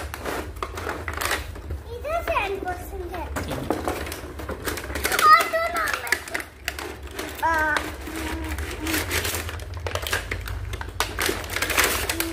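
A cardboard toy box and its plastic packaging being opened and handled by hand: a string of short scrapes, clicks and rustles. A young child's voice is heard a few times in between.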